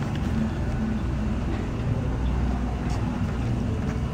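Steady outdoor background noise: a low, even rumble with a faint hum under it and no distinct events.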